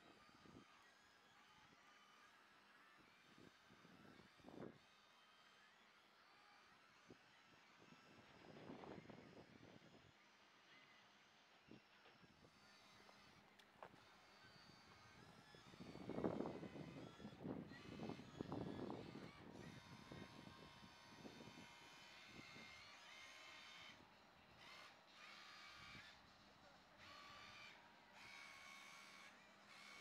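Near silence: faint outdoor background, with a few brief, louder rushes of noise around the middle.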